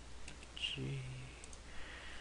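Computer mouse clicks, a few sharp ticks, with a short flat voiced "mm" from the user about a second in, over a steady low electrical hum.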